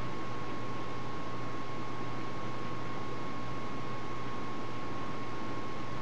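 Steady hiss with a constant thin whine near 1 kHz and a low hum underneath: the recording's electrical background noise, unchanging, with no other sound.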